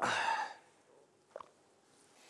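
A man's heavy sigh: one loud, breathy exhale that fades within about half a second.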